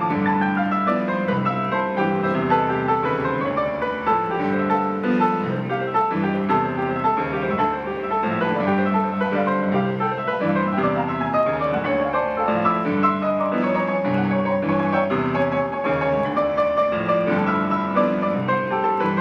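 Grand piano being played: flowing melodic runs of notes in the upper range over sustained low notes.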